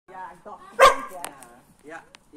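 Boerboel puppy growling and giving one loud, sharp bark a little under a second in, in hostility toward another dog.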